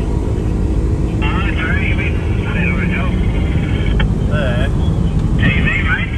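A small helicopter flying low, heard from inside a vehicle as a steady low rumble. Indistinct voices come and go over it from about a second in.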